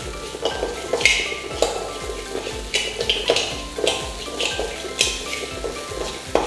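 A steel ladle scrapes and stirs grain dry-roasting in a steel kadai, with a scrape about every half second, over background music.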